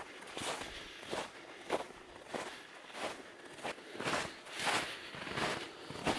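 Footsteps crunching in snow, a steady walking pace of a little under two steps a second.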